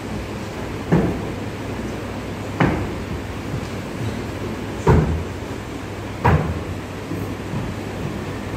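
Shoes stamping on a stage as a student marches in drill step: four sharp thuds, spaced about one and a half to two seconds apart, over a steady low hum.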